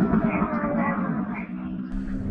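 A dirt-bike rider's garbled, drawn-out vocal sound inside his helmet, wavering and falling in pitch, like choking on his own tongue.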